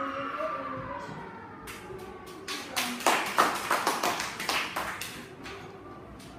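A small group of people clapping, starting about two seconds in and dying away after about three seconds, with a brief voice-like pitched sound fading out at the start.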